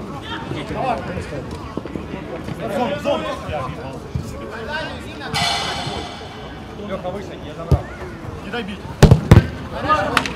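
Players calling out on an outdoor five-a-side football pitch, with a referee's whistle blast lasting about a second midway. Near the end come two loud, sharp thuds of the football being kicked.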